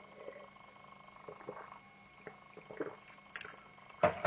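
Faint sips and swallows of beer drunk from a glass: a few soft, short gulping sounds spread over a few seconds, over a faint steady hum.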